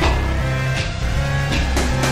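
Background music for a film intro: a soundtrack-style track with sustained deep bass notes and sharp percussion hits about once a second.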